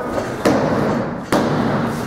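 Referee's hand slapping the wrestling ring mat twice, about a second apart, counting a pin: the count stops at two when the pinned wrestler kicks out.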